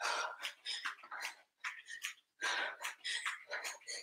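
A woman breathing hard from exertion, in quick breathy puffs about two to three a second with short gaps between them.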